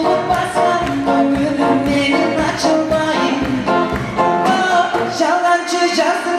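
A man singing to a strummed acoustic guitar in a live performance.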